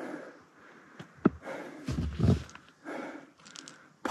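Footsteps crunching and scuffing on loose scree stones during a steep uphill climb, with a few sharp clicks about a second in and low thumps around the middle, and hard breathing from the climb.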